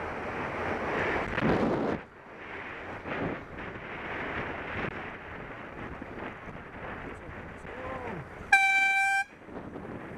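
Road and wind noise from riding in traffic. About eight and a half seconds in comes a single loud horn blast, one steady high note held for under a second, as the car cuts in alongside.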